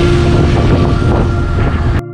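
Wind buffeting the camera microphone while riding a bike beside road traffic, with the rumble of engines and tyres, a motorcycle close alongside, and a steady drone throughout.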